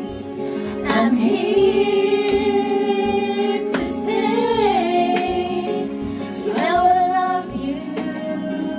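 A woman singing a slow love ballad into a karaoke microphone over a backing track, holding long notes with sliding changes of pitch.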